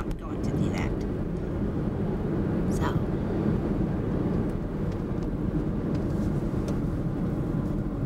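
Steady low rumble of road and engine noise heard inside the cabin of a moving car.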